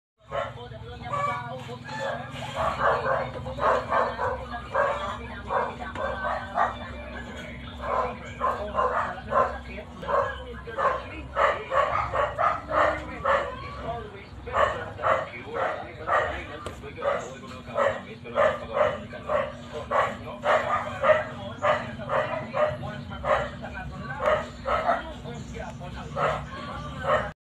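Short animal calls repeated steadily, about two to three a second, over a steady low hum.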